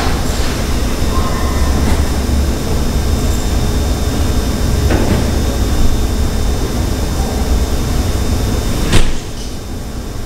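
Loud, steady low rumble with a faint high whine and a few knocks. A sharp click about nine seconds in is followed by a drop in the rumble.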